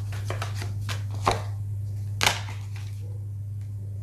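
Tarot cards being shuffled and handled: a run of quick papery clicks, with two louder card slaps about one and two seconds in, over a steady low hum.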